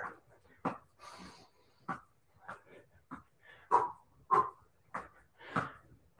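A man's short, sharp exertion breaths, about nine of them at an even pace of roughly one every two-thirds of a second, as he weaves a ball in quick figure-eights through his legs in a low crouch.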